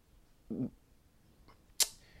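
A woman's pause between sentences: a brief low murmur about half a second in, then a quick, sharp intake of breath near the end as she gets ready to speak again.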